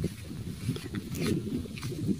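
Uneven, gusty low rumble of wind buffeting a phone microphone outdoors, with a few faint clicks.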